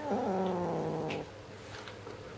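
Red point Siamese kitten giving a long, low growl over the toy in its mouth, a warning that it is guarding the toy. The growl dips in pitch, holds low and stops suddenly just over a second in.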